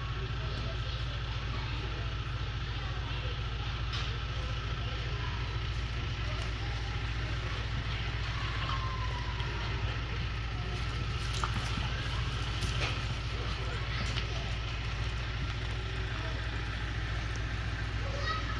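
Steady low hum of a large indoor arena's room noise, with indistinct background voices and a few faint sharp knocks.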